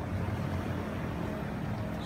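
Steady low hum of an idling engine, with no other events.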